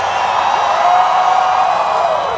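A large crowd cheering and whooping. One long, held cry stands out above the rest from about half a second in.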